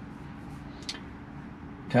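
Steady low hum of a Tesla's cabin at a standstill, with a faint short tick about a second in. A man's voice starts just at the end.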